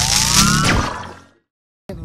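Transition sound effect for a show's logo sting: a loud noisy whoosh with a rising pitched sweep, fading out about a second and a half in.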